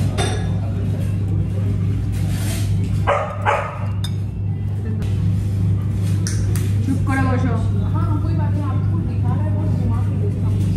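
Café background of music and voices, with a dog barking briefly about three seconds in.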